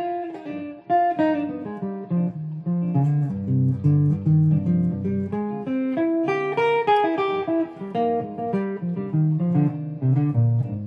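Semi-hollow electric guitar playing flowing single-note jazz improvisation over a minor ii–V–i, D minor 7 flat 5 to G7 to C minor, the lines shifting to outline each chord in turn.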